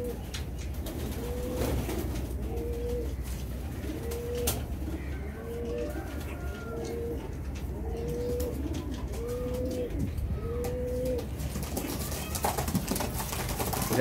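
White domestic pigeons in a wire cage, one cooing over and over, about once a second, until the cooing stops near the end. One sharp click comes about four and a half seconds in.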